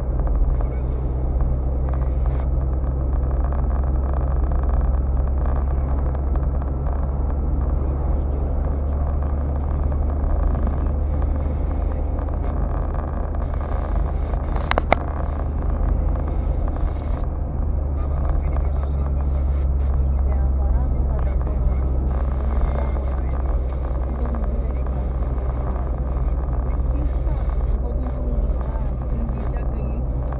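Steady engine and road noise of a car driving, heard inside the cabin, with a single sharp click about halfway through.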